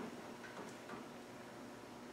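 Quiet room tone with two faint small ticks, about half a second and a second in.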